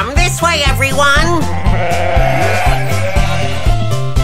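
Children's song backing music with a steady bass beat. Over it, a cartoon sheep gives a long, wavering 'baa' bleat in about the first second and a half.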